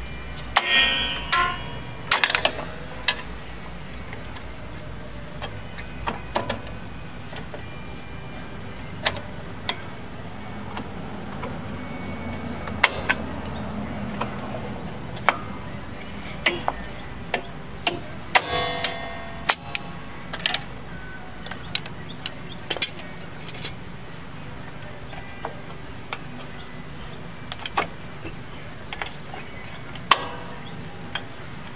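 Steel drum brake hardware being fitted by hand: return springs stretched and hooked into place with a brake spring tool, giving irregular metallic clicks and clinks, some briefly ringing. Short scraping runs come near the start and about two-thirds of the way through.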